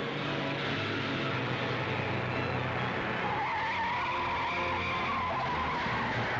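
Car engine running at speed, then tyres squealing in a long drawn-out skid from about three seconds in, the squeal's pitch rising slightly and then sagging.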